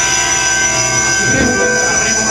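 A live rock band holding a loud, steady electronic drone: many sustained tones sounding together without a break, as from held keyboard or synthesizer notes through the PA.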